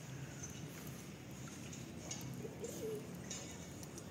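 Footsteps on a paving-stone path at a steady walking pace, with a short bird call a little past the middle.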